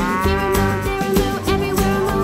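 A cow's moo, one long call lasting about a second that rises and then falls in pitch, over upbeat children's-song music with a strummed guitar.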